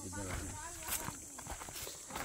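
Footsteps of people walking in slide sandals on a dry dirt trail: a quiet scatter of short scuffs and slaps, with faint voices.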